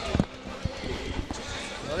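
Basketball arena background noise with a few dull thumps of basketballs bouncing on the court, the loudest near the start.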